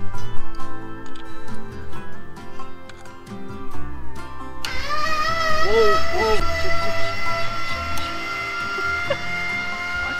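Guitar background music for the first few seconds, then, about five seconds in, a sudden steady whine as the Eco-Worthy dual-axis solar tracker's drive motor starts moving on its own the moment the battery is connected. A short exclamation sounds over it.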